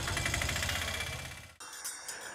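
Small goods carrier's engine idling with an even pulse, fading and then cutting off about a second and a half in. A quieter run of light, regular clicks follows.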